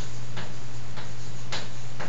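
Chalk striking and scraping on a blackboard as a word is written: three short strokes about half a second apart, over a steady low hum.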